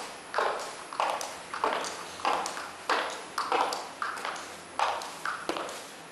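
High-heeled shoes clicking on a hard tiled floor: a woman walking at a steady pace, about three steps every two seconds, each click ringing briefly in a large room.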